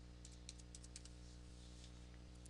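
Computer keyboard typing: a quick run of about seven faint keystrokes in the first second, over a low steady hum.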